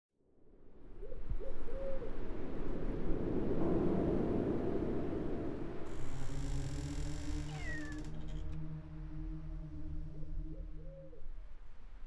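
Eerie sound-effects intro: a rushing, wind-like noise with short low hooting calls. About six seconds in, it gives way to a low sustained drone of several steady tones, with a brief falling squeal in the middle.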